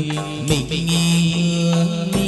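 Chầu văn ritual music from the live ensemble: long held notes over a steady accompaniment, with a slide in pitch about half a second in.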